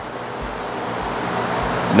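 A steady rushing noise that slowly grows louder.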